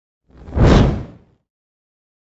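A whoosh sound effect on a news programme's animated logo intro: one rush of noise that swells and dies away within about a second.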